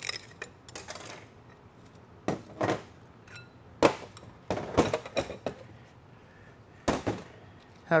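Steel parts of a TH400 automatic transmission's forward clutch drum knocking and clinking on a metal bench as the drum is taken apart and its hub and clutch plates lifted out. Irregular short knocks, the loudest just before four seconds in.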